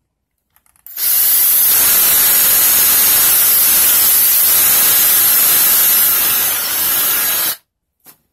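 Electric drill running a twist bit through a thin clear acrylic sheet: a steady, hissing whir that starts about a second in and cuts off sharply shortly before the end.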